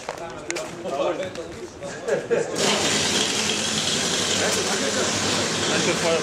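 A steady rush of air hissing starts suddenly about two and a half seconds in and keeps going, after a stretch of men talking.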